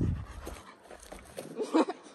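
A large black dog panting, with a short louder burst near the end.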